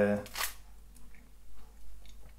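A spoken 'uh' ends the first moment. Then come a short rattle just under half a second in and faint light clicks as the metal Stradella bass mechanism of a chromatic button accordion is handled and held over its open case.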